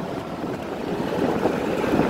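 Steady road and wind noise inside the cabin of a moving vehicle.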